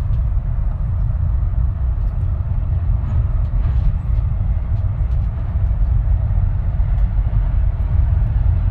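Steady low rumble, heavy in the bass and without a clear pitch, with a few faint ticks over it.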